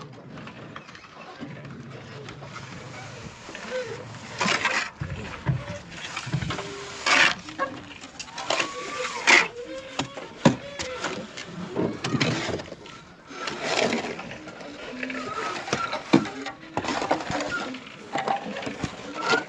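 Mason's trowel scraping and scooping cement mortar in a basin: a series of short scrapes and knocks.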